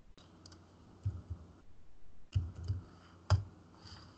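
A handful of irregular clicks from a computer mouse and keyboard, several with a dull low thud beneath, the loudest a little past three seconds in.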